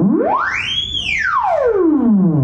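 Theremin playing one continuous sliding note: the pitch glides up from low to a high peak about a second in, then slides back down as the hand moves toward and away from the pitch antenna.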